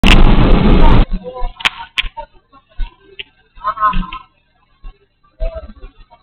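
Loud rustling handling noise on the camera's microphone for about a second, cutting off suddenly. Two sharp clicks follow, then faint scattered sounds with a short pitched tone about four seconds in.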